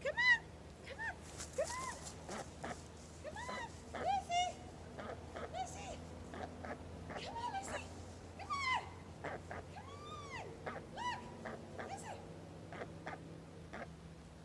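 Canada goose honking repeatedly: a run of short, arched calls about a second apart that thins out near the end.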